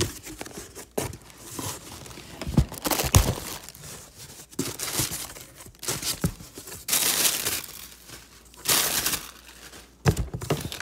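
Cardboard shipping box and its plastic wrap being handled and pulled open: irregular rustling, tearing and crinkling of packaging, with longer crinkles near the end.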